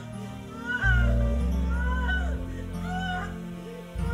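Soft keyboard music, with deep sustained bass notes that come in about a second in. Over it, a high voice slides up and down in short arching cries.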